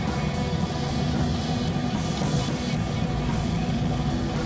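Background rock music with guitar and drums, steady in level.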